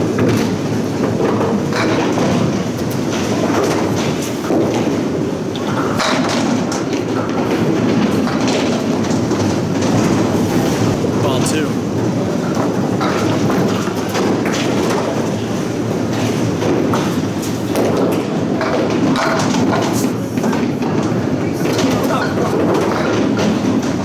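Candlepin bowling alley noise: a steady rumble of balls rolling on the wooden lanes, scattered sharp knocks and clatters of pins and pinsetter machinery, and indistinct voices.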